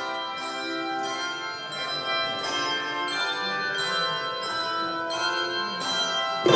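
A handbell choir ringing a piece: bells struck one after another, their tones overlapping and ringing on in a large room.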